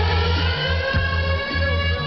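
Live electronic music over a loud concert sound system: a bass note pulsing on a steady beat under a held, bright synthesizer tone that has just slid up in pitch.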